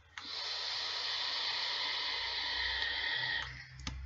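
Steady hiss of air drawn through the Griffin RTA's open airflow as a long puff is taken on the RX200 mod. It lasts about three seconds, fades, and a small click follows near the end.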